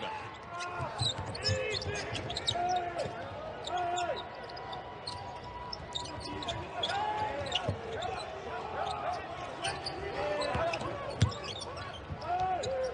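Court sound of a basketball game on hardwood: a ball dribbling and sneakers squeaking in short, repeated chirps, with one sharp thump near the end.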